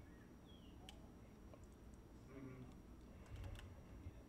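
Near silence: room tone with a few faint clicks of a computer mouse or keyboard, more of them near the end.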